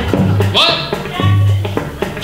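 Live band music: electric guitar over upright bass notes and drums, with a man's voice over it.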